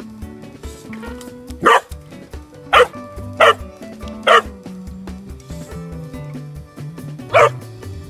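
English bullmastiff puppy barking five times: four short barks in quick succession from just under two seconds in, then one more after a pause of about three seconds, over background music.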